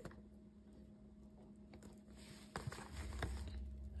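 Faint handling noise as a programming cable's connector is pushed onto a card reader's circuit board and a handheld programmer is picked up: rustling with a few light clicks in the second half, over a faint steady hum.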